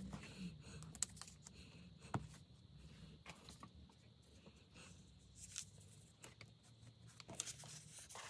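Faint rustling and a few soft taps of paper pieces being handled and pressed down onto a collage page, over a low steady hum.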